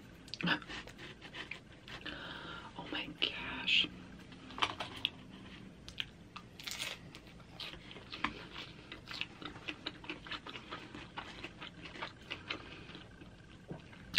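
Close-miked chewing and crunching of crisp flatbread pizza, with irregular small clicks, crackles and wet mouth noises; a few louder crunches stand out among the softer chewing.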